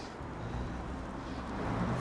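Quiet, low rumble of car traffic on the road, swelling a little toward the end.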